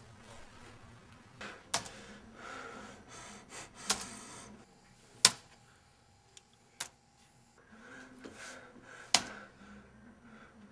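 Keys struck one at a time on a Compaq Presario laptop keyboard: about five sharp, separate clicks a second or two apart, with a few fainter taps between them.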